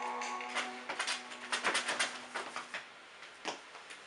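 Music ending, its last note held and then cut off, over a quick, irregular run of light clicks: a small dog's claws tapping and scrabbling on a hardwood floor as it is moved about on its hind legs and set down.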